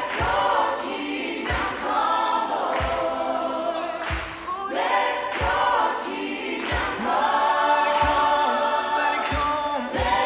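A group of voices singing a song, with a steady low beat thumping about once every second and a quarter.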